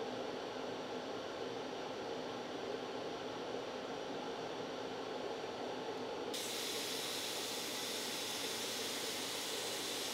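Shaper Origin handheld CNC router running a light inside cut in a cherry inlay piece, a steady hiss. About six seconds in, the sound abruptly turns brighter and more hissy.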